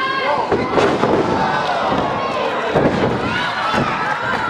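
Small live crowd shouting and cheering at a wrestling match, with a heavy thud of a wrestler being slammed onto the ring mat about a second in, and another impact near three seconds.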